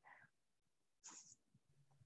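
Near silence on a video-call line, with a faint short hiss about a second in.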